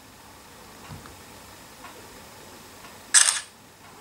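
The Samsung Galaxy Chat B5330's camera shutter sound, played once through the phone's speaker as a photo is taken: a short, bright click about three seconds in, over low room noise.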